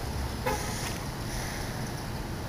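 Steady low rumble of road traffic on a nearby street.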